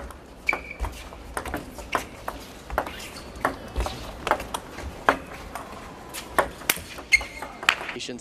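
Table tennis rally: sharp clicks of the celluloid ball off rubber bats and the table, about two a second, as an attacking pair hits against chop defenders playing back from the table.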